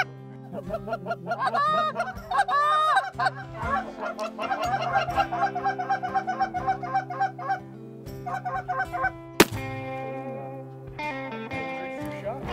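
Canada geese honking and clucking: a few long rising-and-falling honks, then a fast run of short repeated calls, about three or four a second. A single sharp crack about nine seconds in.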